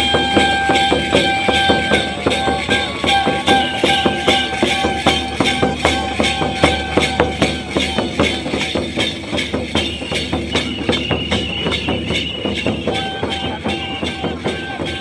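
Live Santhal dance music: fast, even drum strokes about four a second with jingling, under long held notes from a melody instrument.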